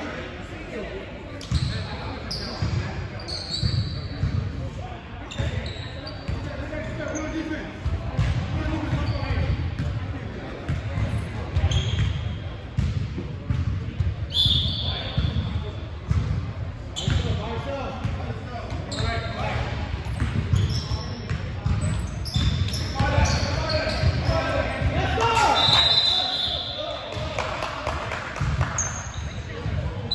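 A basketball being dribbled on a hardwood gym floor, with repeated thumps, short high sneaker squeaks and indistinct players' shouts echoing in a large hall. The shouting is busiest near the end.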